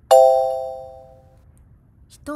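A single bell-like chime sound effect struck once, ringing and fading over about a second and a half. It marks the answer being revealed in a quiz.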